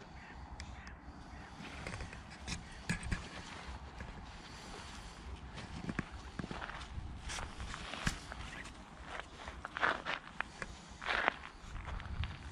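Footsteps crunching on a gravel path, irregular and uneven, over a low rumble of wind on the microphone. Two louder, longer sounds stand out near the end.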